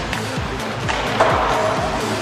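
Background music with a steady beat, over the sound of ice hockey play: skates and sticks on the ice. The sound grows fuller about a second in.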